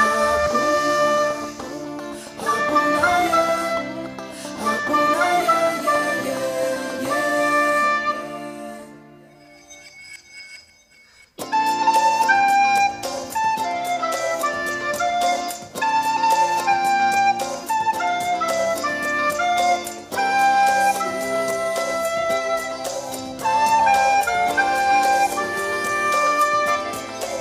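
A soprano recorder playing a song melody over a backing accompaniment of chords and bass. The music dies almost away about ten seconds in, then comes back abruptly a second and a half later with a steady beat.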